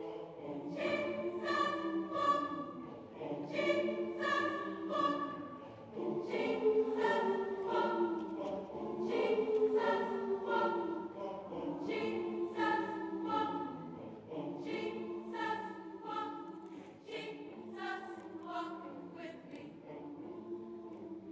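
Gospel choir singing in harmony, with long held notes in phrases of a second or two that swell and fall back.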